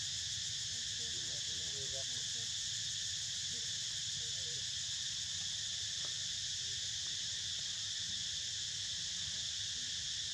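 Insects droning in a steady, high, continuous chorus, over a low rumble underneath.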